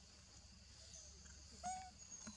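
A faint steady high hiss, with one short pitched animal call with clear overtones near the end.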